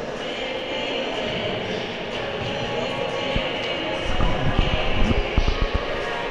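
Basketball game in a reverberant gym: steady hall noise, then several quick thuds of a basketball bouncing on the wooden court about four to five and a half seconds in.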